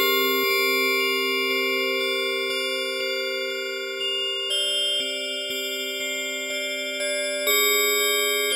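Bell-like synthesizer chords held and slowly fading, played from a MIDI keyboard, with a new chord struck about four and a half seconds in and another near the end. A faint tick recurs about twice a second.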